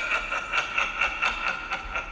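A rapid, rasping laugh that pulses about six times a second.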